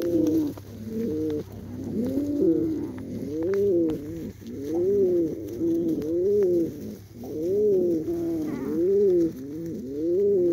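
Domestic pigeon cooing over and over, one rising-and-falling coo about every second.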